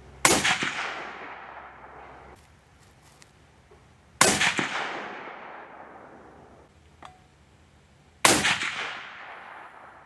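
Three shots from a suppressed Mossberg Patriot bolt-action rifle in .308 Winchester, about four seconds apart, each a sharp report followed by a long echoing decay.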